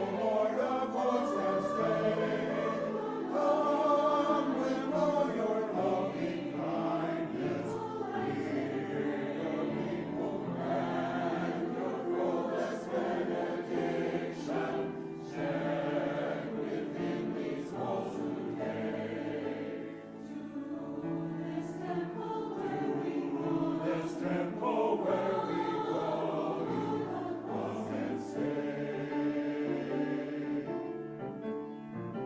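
Mixed choir of men's and women's voices singing together, sustained chords moving phrase by phrase, with a brief dip between phrases about two-thirds of the way through.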